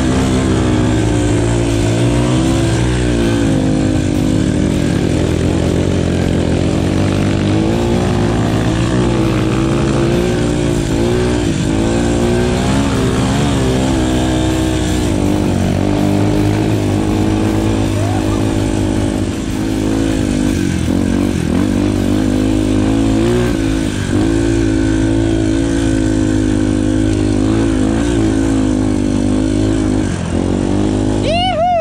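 Dirt bike engine running on a muddy trail under ever-changing throttle, its pitch rising and falling every second or two.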